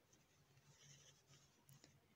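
Near silence, with a faint scratchy rustle of black thread being drawn through crocheted yarn fabric about halfway through.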